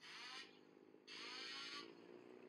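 A race bike on the track revving in two short bursts, the first at the start and the second about a second in, each falling in pitch. A low, steady engine hum runs underneath.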